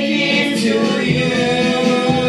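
A group of voices singing a church praise song together, holding long notes.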